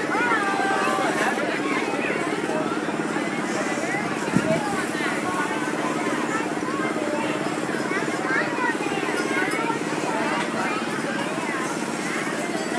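A fairground balloon ride's motor running with a steady hum, under a babble of crowd voices and background music. There is a single sharp knock about four seconds in.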